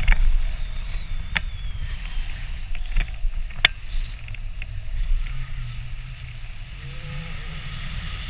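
Airflow buffeting the camera microphone during a tandem paraglider flight: a steady low rumble, with a few sharp clicks in the first four seconds.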